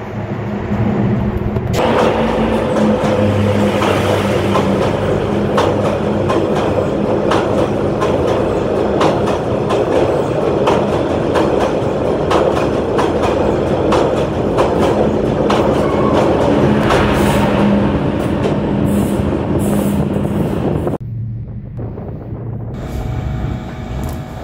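Train passing close by in a dark railway tunnel: a loud, steady rumble with the wheels clattering over the rails, cut off suddenly near the end.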